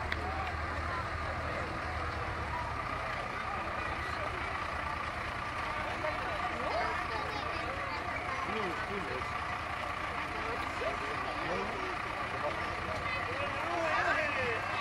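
Diesel engine of a Star fire truck running at low speed as it rolls slowly past close by, a steady low rumble. Voices of onlookers chatter over it.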